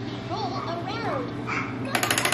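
A baby babbling in a few short squeals that rise and fall in pitch, with a rapid rattling clatter starting right at the end.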